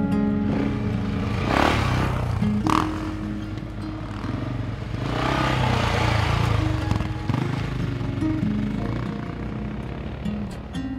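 Acoustic guitar background music over two enduro motorcycles passing by, the first about a second and a half in and the second around six seconds in.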